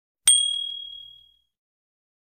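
Notification-bell 'ding' sound effect for a subscribe-button animation: one struck ding with a click at its start, ringing on one clear tone and fading away over about a second.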